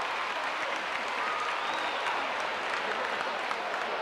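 Arena crowd applauding, a steady wash of clapping with some crowd voices mixed in.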